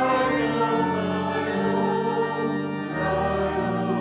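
Church choir singing a hymn in parts, with sustained organ chords underneath.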